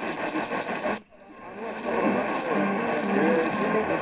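AM radio receiver scanning the medium-wave band: a weak station buried in static, a brief mute about a second in as it steps to the next frequency, then a Spanish-speaking station fading up through the static.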